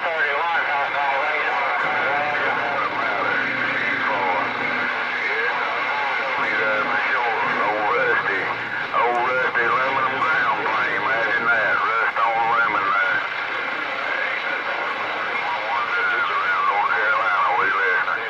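Galaxy radio's speaker playing unintelligible voices of distant stations, with wavering, garbled pitch, over a steady hiss of static.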